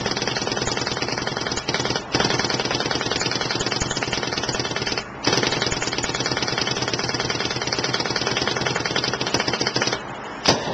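Proto Matrix PM8 paintball marker firing long rapid strings in uncapped PSP ramping mode, the shots coming too fast to count. The firing breaks off briefly about two seconds in and again about five seconds in.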